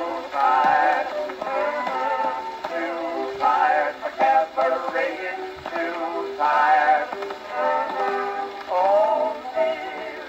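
A 1924 Cameo 78 rpm record playing on an acoustic phonograph: an instrumental dance-band passage between the sung choruses, with wavering melody lines over a steady accompaniment.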